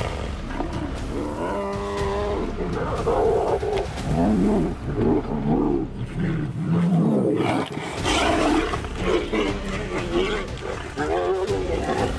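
Two Bengal tigers, one of them white, growling and roaring as they fight, a string of harsh calls that rise and fall with short breaks between them.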